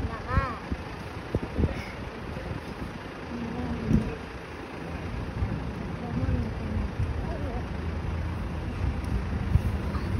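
A fire-service vehicle's engine idling with a steady low hum, with a small child's short vocal sounds now and then over it.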